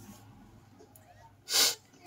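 A person sneezing once, short and loud, about a second and a half in.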